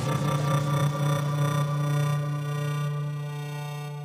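Background electronic music: one held chord of steady tones that slowly fades away.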